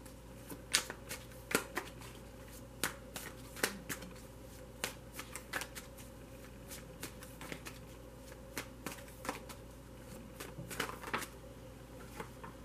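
A Crystal Visions Tarot deck being shuffled by hand, hand over hand. The cards make irregular quick clicks that come in short clusters, with brief pauses between them.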